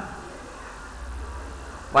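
A steady low rumble in a pause between spoken sentences, a little stronger after about half a second.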